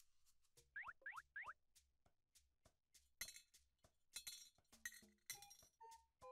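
Faint cartoon sound effects of coins going into a piggy bank: three quick rising zips about a second in, then a scatter of light clinks and plops from about three seconds on.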